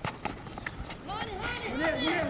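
Players shouting and calling across an outdoor football pitch, starting about halfway through, over a scatter of short taps from running feet.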